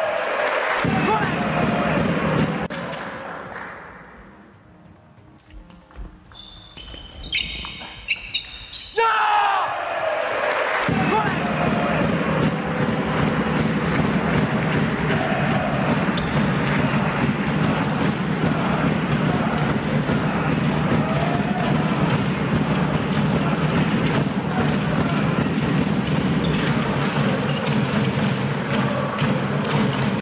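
Table tennis hall sound with a ball bouncing and being struck in the first seconds. About ten seconds in, steady background music with a beat takes over and cuts off sharply at the end.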